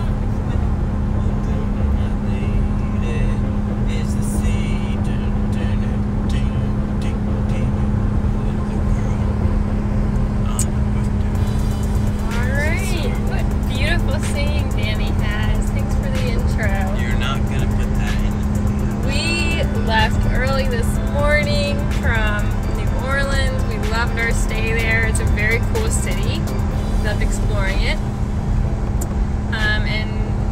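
Steady road and engine rumble inside a moving Ford Explorer's cabin. Music with a singing voice plays over it, the singing coming in about twelve seconds in.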